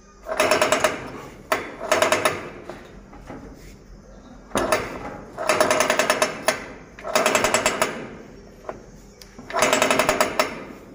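Rolling shutter's sprocket-and-chain drive clattering in rapid metallic ticks, about ten a second, in six short bursts of about a second each with pauses between.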